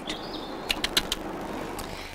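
Rustling and a few sharp clicks over a steady hiss, from a barn owl nest box with a chick moving about on the nest debris.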